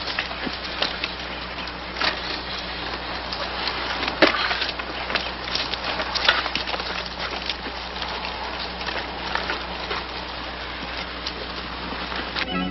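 Crackling hiss full of irregular clicks and pops over a steady low hum: the surface noise of a worn old film soundtrack.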